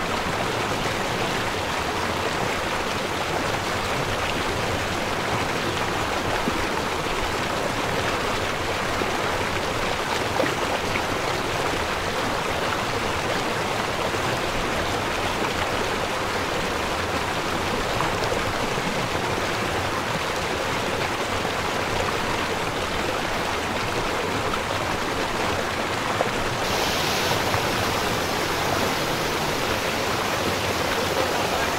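Fast-flowing, shallow stream rushing over rocks and through small rapids: a steady, even rush of water that goes on without a break.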